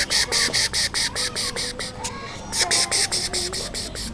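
Rapid, evenly repeated high chirping, about seven pulses a second, in two runs with a short break about two seconds in, over softer gliding high-pitched calls.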